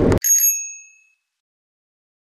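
A single bright bell ding, like a bicycle bell, used as an edited-in sound effect. It rings once about a quarter second in and fades out within about a second, with dead silence after it. The in-car road noise cuts off abruptly just before it.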